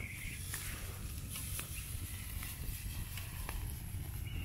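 Wood fire crackling under a grill grate: a few sharp, separate pops about once a second over a low steady rumble.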